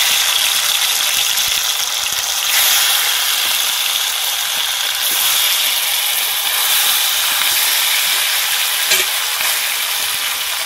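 Marinated raw chicken sizzling loudly in hot oil in an aluminium karahi as it is tipped in by hand from a steel bowl: a steady, even frying hiss, with one short click near the end.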